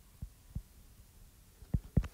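A few short low thumps, the strongest two near the end: a stylus tapping on a tablet's glass screen while handwriting.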